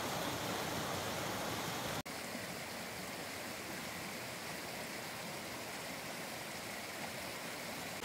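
Small mountain stream rushing and cascading over rocks in a steady rush of water. About two seconds in it cuts abruptly to a slightly quieter, more distant rush of the same stream.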